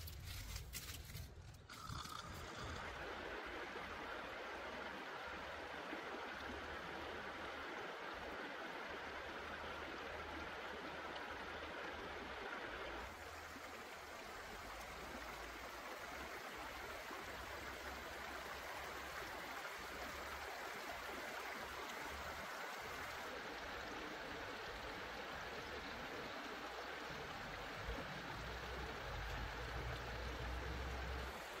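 Shallow stream water running and trickling over river stones, a steady rushing with a low rumble underneath.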